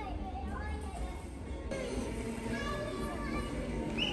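Young children's voices, talking and calling out as they play, with music in the background.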